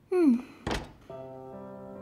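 A short falling vocal 'hm' sound, then a single dull thunk, after which soft background music begins with held, sustained chords.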